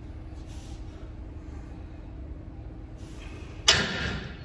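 Steady low room hum with faint breaths during seated dumbbell shoulder presses. Near the end comes a sudden loud rush of air, a forceful exhale, that fades over about half a second.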